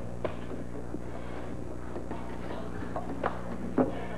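A few soft knocks and taps, one just after the start and two close together near the end, over a steady low hum.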